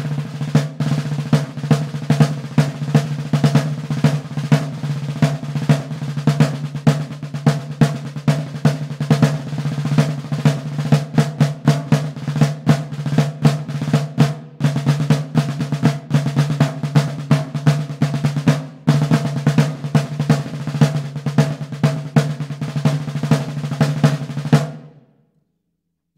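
Vintage Slingerland 16-by-16-inch field drum with a Remo Ambassador top head, a tightened bottom head, old Patterson snares and its internal mufflers removed, played with sticks: rapid strokes and rolls over a huge, deep ringing tone, like a floor tom with snares. The playing pauses briefly twice and stops near the end.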